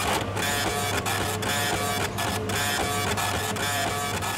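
Kitchen order-ticket printer printing with a steady mechanical whirr over a low hum.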